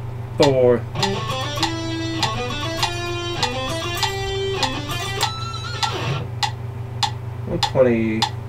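Electric guitar playing a quick alternate-picked run of short notes climbing across the strings, changing string after an upstroke, over a metronome clicking at 100 beats a minute. A voice counts briefly just after the start and again near the end.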